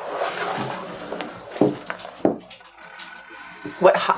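Kangaroo-leather lace being handled and drawn across a leather hide on a workbench: a soft rustling slide, then a few light knocks and clicks.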